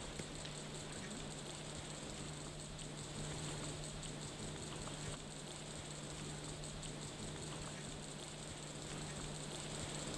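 Faint, steady outdoor ambience: an even hiss with a low steady hum underneath and no distinct events.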